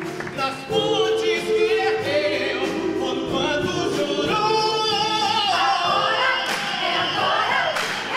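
A man sings a solo line into a handheld microphone, with wavering vibrato and melodic runs, over ensemble voices and a live orchestra in a gospel-style show tune.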